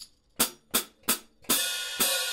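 Saluda Glory hi-hats, the bottom cymbal vented with two holes, struck with a stick three times in quick short strokes. About one and a half seconds in they ring out in a sustained bright wash.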